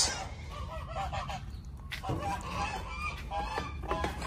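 Farm geese honking a few times, fainter than the nearby talk around it.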